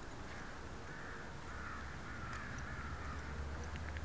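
A bird calling several times in harsh, rough calls, over a steady low rumble.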